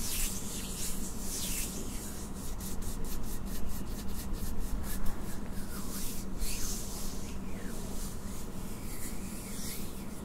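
Hands rubbing together close to the microphone: slow swishing strokes, with a fast run of short, quick rubs in the middle.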